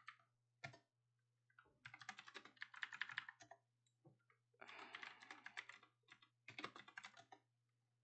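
Typing on a computer keyboard, faint: a couple of single key presses, then three quick runs of keystrokes as terminal commands are entered, over a low steady hum.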